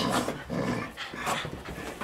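A spaniel playing on carpet: panting and scuffling, with short irregular rustles as it rolls and twists.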